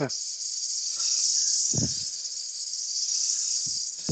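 Abrasive pressed against a wooden goblet spinning on a lathe: the steady high hiss of sanding, with a faint steady hum underneath.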